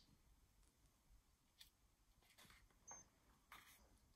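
Near silence, with a few faint, brief paper rustles and soft clicks as a picture-book page is turned by hand.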